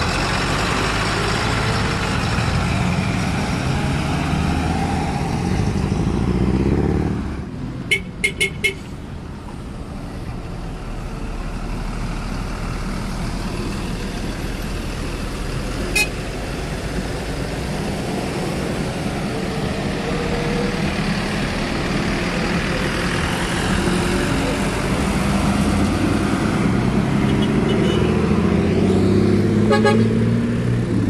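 City bus engines running as buses pull away, loud for the first seven seconds and then dropping sharply as one passes, with another building up toward the end. About eight seconds in, a horn gives four short toots.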